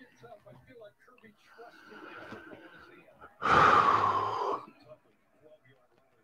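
A person's loud, breathy exhale, about a second long and close to the microphone, just after the middle, among faint talk.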